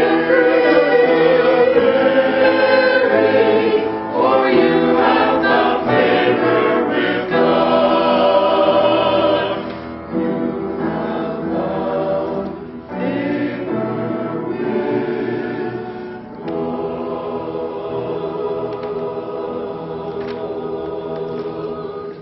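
Mixed choir of men's and women's voices singing an Advent choral piece in phrases, softer after about ten seconds, with a long held stretch in the last few seconds.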